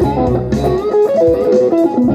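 Stratocaster electric guitar tuned down a half step, playing a blues lead line of single notes with string bends.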